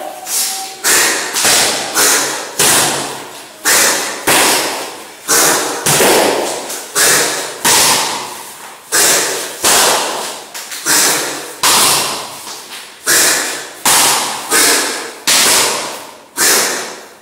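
Series of sharp striking sounds from two Dragon Stake Boxing practitioners working through a form, roughly one to two a second at an uneven tempo, each ringing briefly in the hall.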